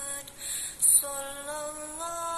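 A woman singing long, steady held notes that break off briefly. Between the notes, a little under a second in, comes a short loud noise, and then a new note begins that steps up slightly in pitch.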